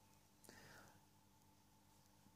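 Near silence: room tone, with one faint, brief click and soft rustle about half a second in.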